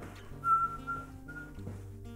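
A high whistled note held for about half a second, then a second, shorter whistle, over background music.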